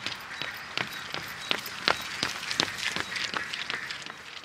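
Even, regular footfalls, a little under three a second, like a person running, over a light hiss.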